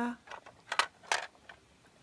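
A hard plastic triangle shape piece clicking and knocking against a plastic Ninky Nonk shape-sorter toy as it is fitted into its hole. There are a few short clicks, the two loudest near the middle.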